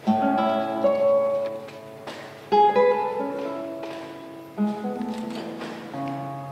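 Nylon-string classical guitar built by Stephan Connor, played solo: it starts with a chord, and fresh chords are struck about a second in, at two and a half seconds and near five seconds, each ringing on under a slow melody.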